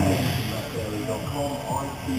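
A quieter, indistinct voice continuing under a steady background hum and hiss, between the louder lines of race commentary.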